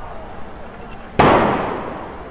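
A single loud bang about a second in, dying away over most of a second, over the steady hiss of a fire hose spraying.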